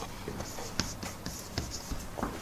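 Faint writing on a board, heard as a few short scratchy strokes and taps.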